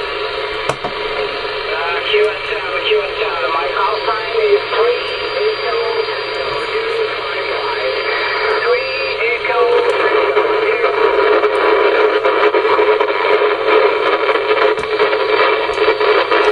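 Shortwave transceiver's speaker on the 11-metre band (27.560 MHz) playing a distant station's voice buried in heavy static and hiss, the speech too weak to make out. The noise grows a little louder in the second half.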